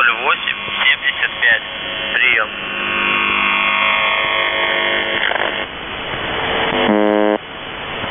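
Shortwave radio reception on 4625 kHz, the frequency of the Russian military station known as The Buzzer, through a narrow-band receiver. It is noisy, with warbling whistles and steady tones from interfering signals. A short buzz comes about seven seconds in.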